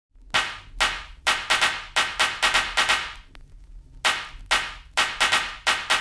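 Percussion-only intro of a 1980s disco/dance record: sharp, ringing drum hits in a syncopated pattern, about a dozen strokes, with a short break around three seconds in before the pattern starts again.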